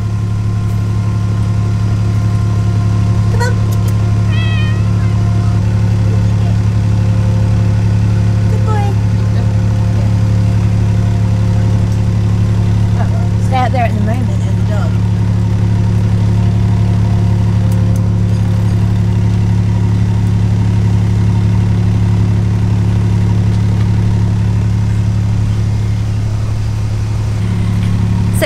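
Steady low drone of boat diesel engines idling nearby, with a cat meowing a few times, around four seconds in and again about fourteen seconds in.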